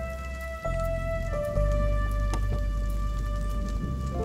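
Soft background film score: high notes held over a low bass that changes pitch about half a second and a second and a half in.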